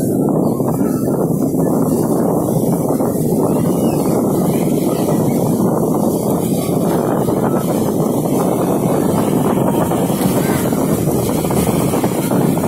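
Steady wind buffeting the microphone, a dull continuous rumble, over small sea waves breaking on a sandy shore.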